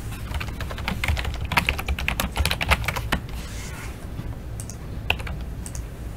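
Computer keyboard typing: a quick run of key clicks for about two and a half seconds, then a single click near the end, over a steady low hum.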